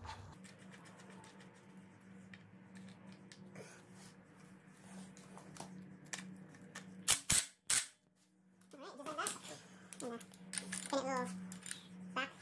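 Crank bolt and spacer being fitted by hand onto an engine's crankshaft sprocket: three sharp metallic clicks close together about seven seconds in, over a faint steady low hum. Faint voices can be heard near the end.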